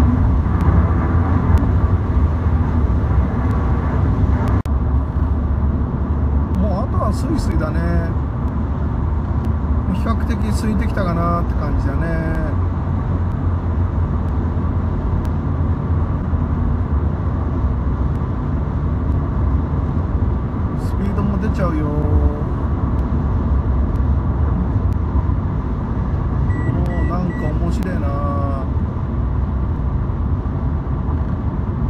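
Road noise inside a car cabin at freeway speed: a steady low rumble of engine and tyres on concrete.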